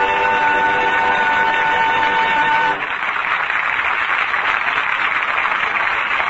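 Radio studio orchestra holding a closing chord that cuts off about two and a half seconds in, followed by steady studio-audience applause at the end of the act.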